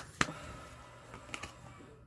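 The last slap of a tarot deck being shuffled by hand, then a couple of faint card clicks over quiet room tone.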